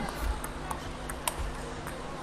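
Table tennis rally: the celluloid-type ball's sharp clicks off the bats and table, a handful of separate ticks about half a second apart.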